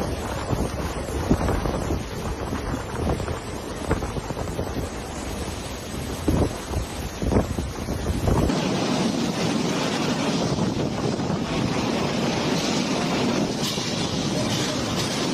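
Typhoon-force wind gusting and buffeting the microphone over heavy driven rain, with low rumbling gusts. About eight seconds in it cuts to a steadier, hissing rush of wind and rain.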